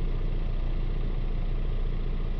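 Ford Transit Connect's 1.5 diesel engine idling steadily, heard from inside the cab.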